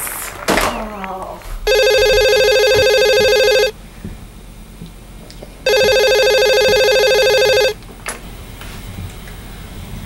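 Telephone ringing twice with a trilling ring, each ring about two seconds long with a two-second gap between them, followed by a click about eight seconds in.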